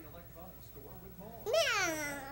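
A toddler imitating an animal with one drawn-out, meow-like call about one and a half seconds in, its pitch rising briefly and then falling. It is his answer to what a goat says, and it is wrong.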